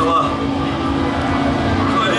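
Indistinct voices over a steady low hum and noise from the stage amplification, with no music playing.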